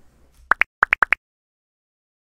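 Logo-animation sound effect: six short pitched pops in three quick pairs, each pair stepping up from a lower to a higher note, all within the first second or so.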